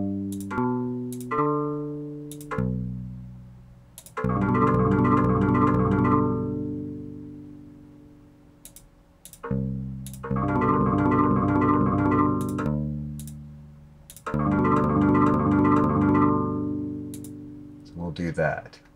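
Synthesized bass notes from Code.org's Project Beats: a few single notes sound one after another as notes are clicked on its on-screen keyboard, then an up-arpeggio pattern plays back in three loud passages, each fading out. Sharp mouse clicks fall between the passages.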